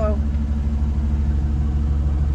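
GMC Sierra pickup's engine idling steadily as the truck backs slowly up to the trailer hitch.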